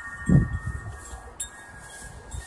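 Chime-like ringing: several steady high tones held through, with a brief low thump about a third of a second in.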